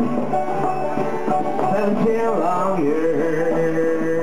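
Small acoustic string band playing a folk tune on plucked strings, a mandolin-like instrument and a long-necked banjo-type instrument among them. A melody line bends in pitch midway, then holds one long steady note.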